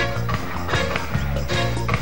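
Live reggae band playing an instrumental passage with a steady beat.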